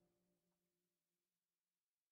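Near silence: the audio drops out completely between the played passages.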